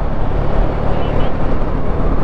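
Sport motorcycle riding in traffic: a steady engine hum under a loud rush of wind noise on the rider's microphone.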